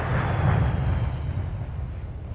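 Steady rushing ambient noise with a deep rumble, slowly fading, with no speech or music.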